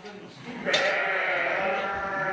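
A Dorper sheep bleating: one long, drawn-out call that starts under a second in and carries on.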